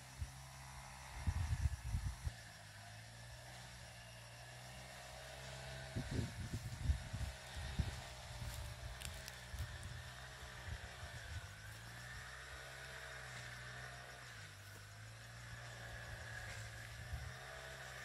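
Quiet outdoor ambience: a steady low hum with faint wavering higher tones, broken by irregular low rumbles about a second in and again from about six to eight seconds in.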